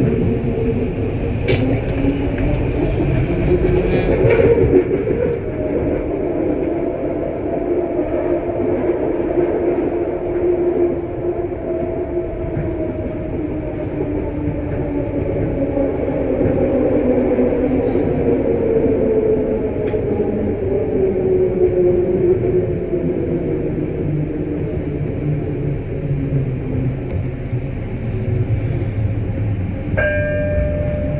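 Detroit People Mover car running on its elevated guideway, heard from inside: a steady rumble of steel wheels on rail under the whine of its linear induction motors. The whine rises in pitch in the first few seconds as the car gathers speed, then falls through the second half as it slows into the next station.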